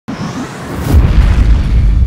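Cinematic logo-intro sound effect: a swell that builds into a deep, sustained boom about a second in.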